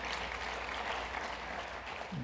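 A congregation applauding, many hands clapping at once in a steady patter.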